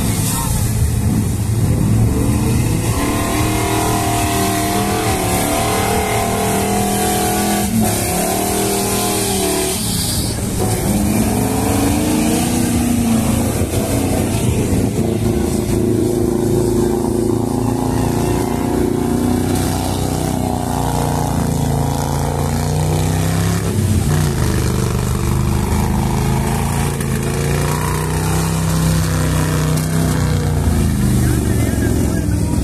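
Eight-cylinder off-road racing truck engine revving hard, its pitch rising and falling again and again, as the truck drives through deep mud and muddy water.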